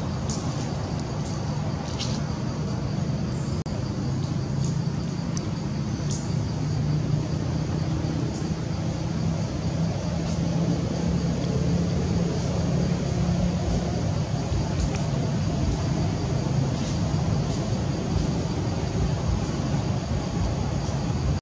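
Steady outdoor background noise, a continuous low rumble with a few faint ticks.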